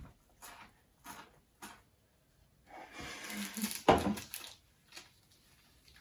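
A snack being bitten and chewed: a few short crunches about half a second apart, then a rustle and a sharp knock about four seconds in.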